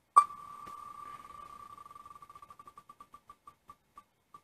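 Wheel of Names online spinner's tick sound effect: a sharp click as the wheel is set spinning, then rapid ticks that blur together at first and gradually slow to about two a second as the wheel coasts down.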